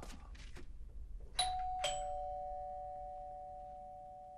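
Two-tone doorbell chime: a higher ding, then a lower dong about half a second later, both ringing on and fading slowly, after a few faint clicks.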